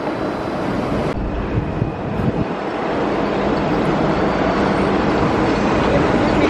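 Steady heavy mechanical rumble of container-port machinery, growing slowly louder.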